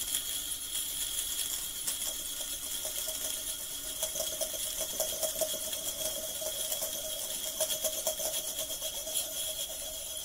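Noise music made from processed recordings of found objects: a dense, rapid metallic clicking and rattling over steady high-pitched tones. A mid-pitched drone fades in about two seconds in and grows stronger from about four seconds.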